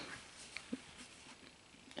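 Near silence with two faint clicks a little over half a second in, from handling cardboard LaserDisc jackets.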